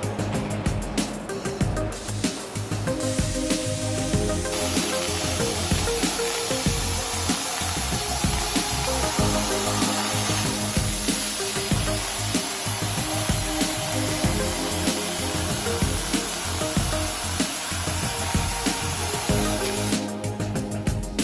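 Background music, joined about four seconds in by the steady hiss and high whine of a plasma torch cutting through a steel H-beam. The hiss stops abruptly at the end.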